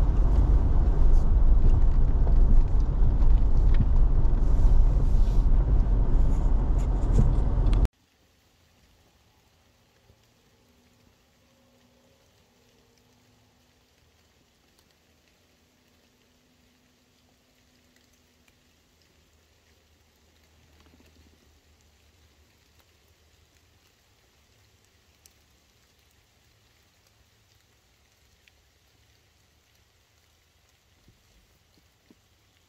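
A Jeep driving along a wet dirt forest road, its engine and tyre noise steady and loud, cutting off suddenly about eight seconds in. After that, near silence with faint scattered ticks.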